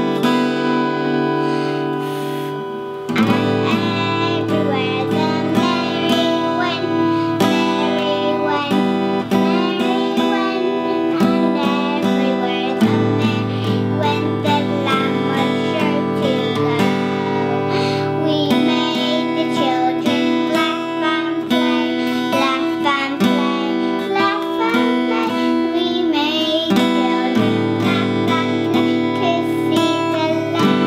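Acoustic guitar music with a voice singing along, the chords changing every few seconds.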